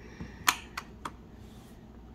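Light plastic clicks and taps, four in quick succession with the second one loudest, as a small blister-packed mini toy and opened plastic capsule pieces are handled and set down on a plastic tray.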